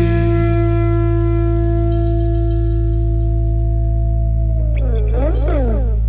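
Psychedelic rock song near its end: a held, echo-laden chord over a steady deep bass drone. Near the end, pitch glides sweep up and down across each other.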